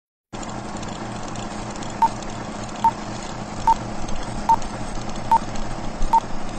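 Film projector running with a steady whirring clatter. A short beep at one pitch sounds about every 0.8 s from about two seconds in, five in all: a film-leader countdown.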